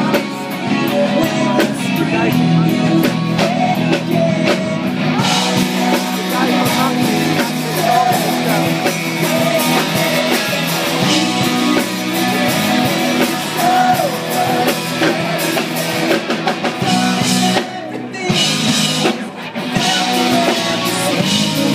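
Live rock band: a male lead vocal over electric guitars and a drum kit, heard from within the audience, with a short break in the band a little before the end.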